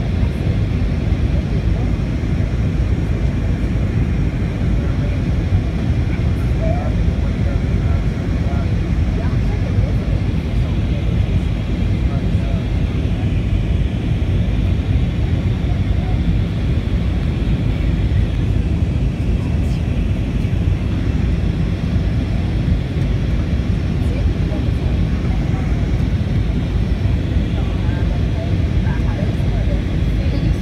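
Steady cabin noise inside an Airbus A319 airliner descending on approach: an even, low rush of airflow and engine noise with no changes.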